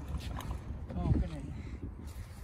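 Utility cart's wheels rolling over asphalt, a steady low rumble.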